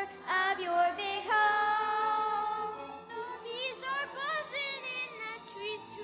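A child singing through a microphone in one voice: long held notes in the first half, then a quicker melodic phrase with wavering pitch.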